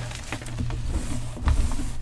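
Hands squeezing and crumbling soft dyed chalk powder, a crackly dry crunch with small grains pattering down, and a louder crunch about a second and a half in.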